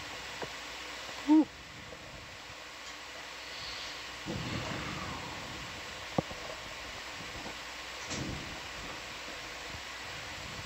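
Steady hiss of the audio feed, broken by a short, loud pitched blip about a second in and a single sharp click about six seconds in.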